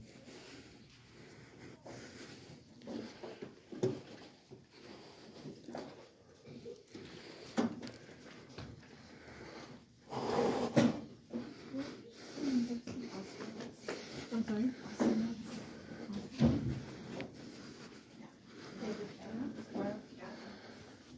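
Indistinct voices of people talking in a library, with a few short knocks.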